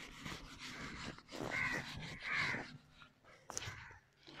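A felt whiteboard eraser wiped across a whiteboard in a run of soft rubbing strokes, two of them louder around the middle.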